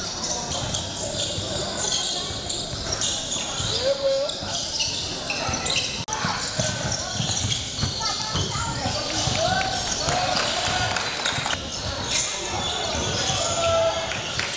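Basketballs bouncing on a gym's wooden court in repeated knocks, with players' scattered voices, during basketball play.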